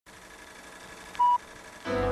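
Faint tape hiss, then a single short, loud, high-pitched beep about a second in: the sync beep of a film countdown leader. Music starts right at the end.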